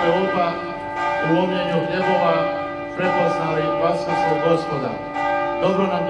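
Church bells ringing continuously, a dense chord of many overlapping tones held throughout, with a man's voice over them.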